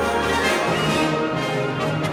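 Symphony orchestra playing a sustained passage, with brass prominent.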